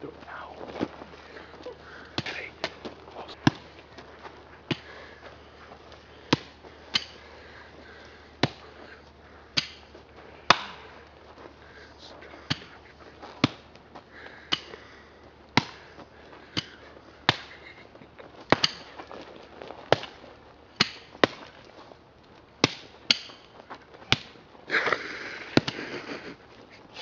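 Repeated blows of hand-swung tools striking down hard onto something on the ground: a sharp chop or thwack roughly once a second, uneven, as two people take turns.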